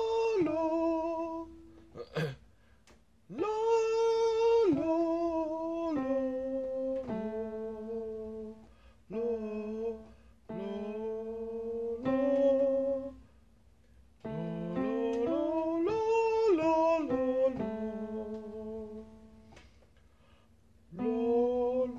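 A beginner singer practising vocal scales, holding one sung vowel after another that steps up and down in pitch, with digital piano notes under the voice. The phrases come in groups of held notes separated by short pauses.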